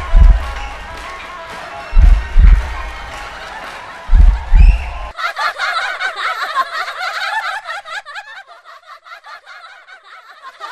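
Deep bass drum hits, mostly in pairs about every two seconds, over a musical backing. About five seconds in this cuts to a group of women laughing and giggling, high and warbling.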